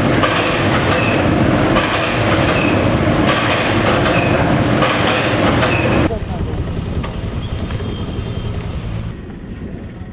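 Automatic water pouch packing machines running with a repeating mechanical clatter, one cycle about every second and a half. About six seconds in the sound drops away suddenly, leaving a quieter background.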